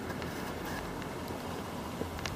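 Steady background noise with a faint low hum and a thin high steady tone, and no distinct event.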